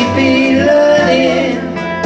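Live rock band playing: electric guitars, drum kit and keyboard with a voice singing over them, at a steady, loud level with regular cymbal strikes keeping the beat.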